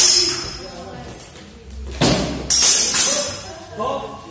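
Steel training longswords clashing in a sparring exchange: a sharp ringing clash at the start, then a quick run of three clashes and hits about two to three seconds in.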